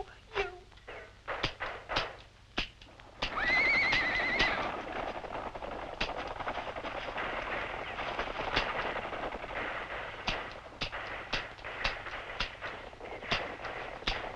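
Western-style gunfight sound effects: scattered gunshots, a horse whinnying with a wavering pitch about three seconds in, then a steady rush of noise broken by many sharp shots.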